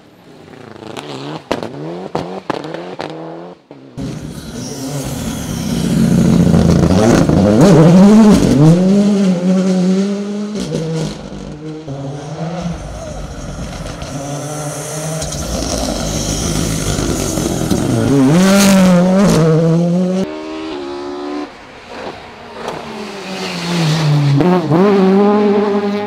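Rally cars driven flat out on a tarmac stage, several in turn. Their engines rev hard, rising in pitch and dropping back again and again through gear changes. The sound is loudest as a car passes close by.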